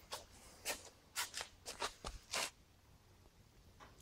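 A quick run of short clicks and scuffs, about eight in the first two and a half seconds, like small handling noises in a workshop.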